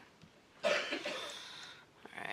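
A single person's cough, sudden and then trailing off over about a second, heard in a small meeting room.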